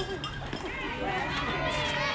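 Several overlapping, indistinct voices of softball spectators and players calling out and chattering.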